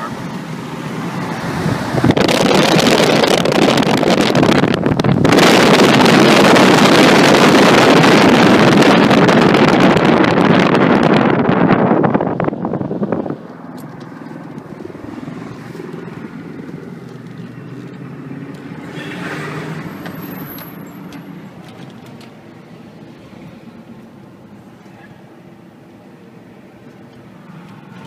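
Loud wind and road noise rushing around a moving car at highway speed, heard from inside the cabin. About thirteen seconds in it drops suddenly to a much quieter, steady low hum from the car.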